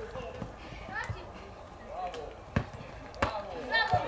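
Distant voices calling out across a youth football pitch, with a couple of sharp thuds of the ball being kicked, the clearest about two and a half seconds in and another near the end.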